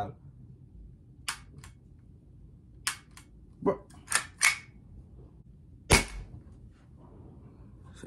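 CO2-powered SIG pellet pistol being test-fired: a run of short sharp cracks and clicks, with the loudest, fullest crack about six seconds in.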